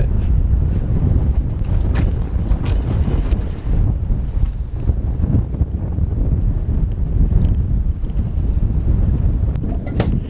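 Wind in a force four to five breeze blowing across the microphone on a moored yacht's deck, a loud low rumble that rises and falls with the gusts.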